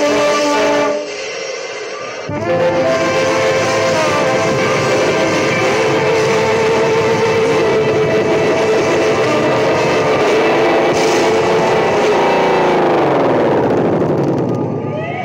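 A ska band's recording with horns holding notes, a brief drop in level about a second in, then the full band with guitar playing on. Near the end the whole sound slides down in pitch together as the song winds down.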